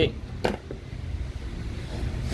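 A low, steady background rumble with one short sharp click about half a second in.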